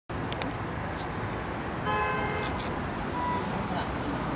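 Steady low rumble of distant road traffic, with a vehicle horn sounding once, briefly, about two seconds in.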